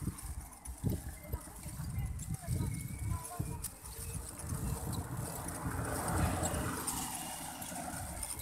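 Wind buffeting a handheld phone's microphone while riding a bicycle along a street, an uneven low rumble, with a passing vehicle rising and falling in the second half.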